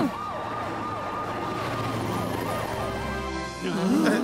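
Cartoon emergency-vehicle siren wailing, its pitch sweeping up and down rapidly and repeatedly, over background music; it fades out shortly before the end.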